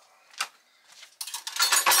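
Small hard items rattling and clinking as a plastic multi-drawer organizer and stored things are shifted by hand: a single click about half a second in, then a burst of clattering in the second half.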